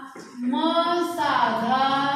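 A voice chanting drawn-out syllables in a sing-song tone. It begins a moment in after a brief pause, and its pitch dips and rises on one long held syllable.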